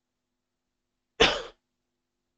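A man's single short cough, a little over a second in.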